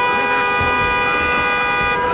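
Arena timekeeper's horn sounding one steady blast of about two seconds, several pitches at once, starting abruptly and cutting off sharply.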